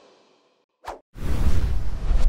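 Logo-sting sound effect: a moment of silence, a short swish about a second in, then a loud rushing whoosh with a deep rumble underneath.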